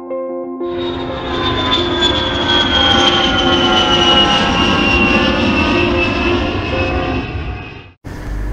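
Jet airliner engines rushing past with a whine that slowly falls in pitch, starting just under a second in and cutting off just before the end, over ambient music.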